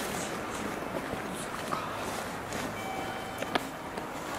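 Tobu 500 series Revaty train set on a delivery move, running slowly some way off, with a steady rumble and wind on the microphone. A short high tone and a sharp click come about three and a half seconds in.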